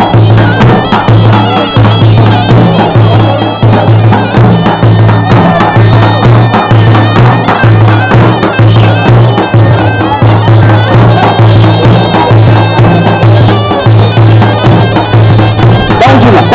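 Loud traditional Turkish folk music for wrestling: a big double-headed drum (davul) beating a steady rhythm under a reed pipe (zurna) playing a continuous melody.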